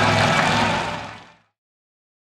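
Monster truck engine running hard under a wash of noise, fading out about a second in to silence.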